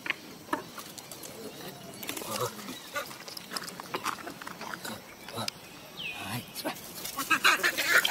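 Young macaques calling: scattered short grunts and squeaks, one falling squeal about six seconds in, and a louder flurry of calls and scuffling on gravel near the end as two of them tussle.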